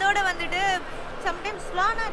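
Only speech: a woman talking.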